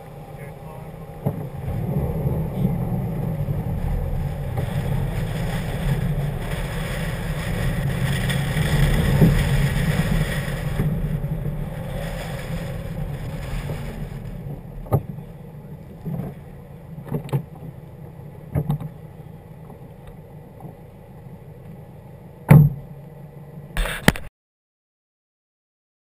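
Subaru WRX's turbocharged flat-four engine driving slowly across a gravel lot, its sound swelling over the first ten seconds and then easing off. Several sharp knocks come in the second half, the loudest near the end, before the sound cuts off.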